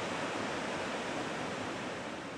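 Steady rushing wash of ocean surf breaking on a sandy beach.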